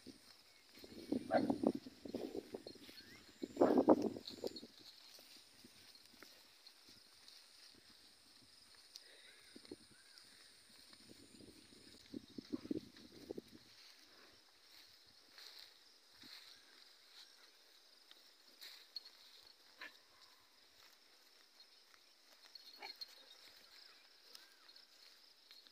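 Cattle grazing close by: short bursts of grass being torn and chewed, with hoof steps, in the first few seconds and again about halfway. The rest is quiet, with only a few faint clicks.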